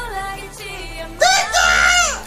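Concert music with a singing voice playing underneath; then, a little over a second in, a man lets out a loud, high-pitched excited scream that holds for most of a second and slides down at its end.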